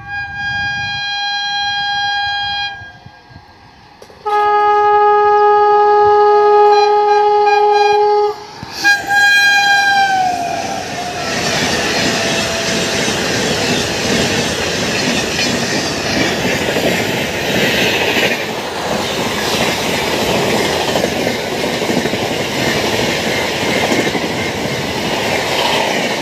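Howrah Rajdhani Express passing at high speed: the locomotive's horn sounds three times, a blast of a couple of seconds, a longer and louder one of about four seconds, and a short one that drops in pitch as the engine goes by. The coaches then rush past with a steady roar of wheels on the rails.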